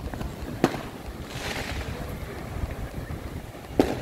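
Fireworks going off: two sharp bangs, one under a second in and one near the end, over a low steady background rush.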